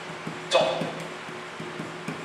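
Quiet background music with low plucked-string notes, with one short spoken syllable about half a second in.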